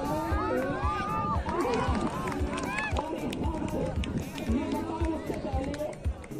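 Many voices of spectators and players shouting and calling over one another outdoors, with frequent short low thumps underneath.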